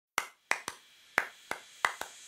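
Six finger snaps in an uneven rhythm, opening the podcast's theme tune before the plucked instruments come in.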